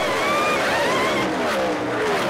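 Race car engines at high revs, several overlapping and sweeping past with their pitch rising and falling.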